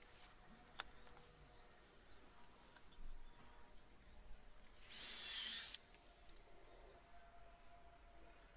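A short scraping hiss about five seconds in, lasting under a second, from a pallet-wood board being slid against wood as the chair frame is positioned; a light tap of wood near the start, over faint background quiet.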